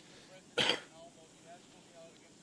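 A person clears their throat once, briefly and close to the microphone, about half a second in, over faint, distant speech.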